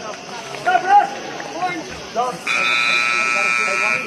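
A buzzer horn sounds one steady blast about a second and a half long, starting a little past halfway through. Shouting voices come before it.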